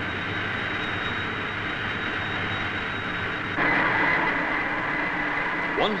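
Turbo rotor test rig running on air ducted from an Orenda turbojet: a steady rushing noise with a high whine. About three and a half seconds in it grows louder and a lower whine takes over.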